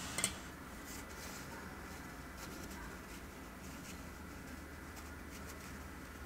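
Faint handling sounds: a light click near the start as the glass dip pen comes out of the rinsing cup, then quiet rustling of a paper tissue wiping the pen, over low room noise.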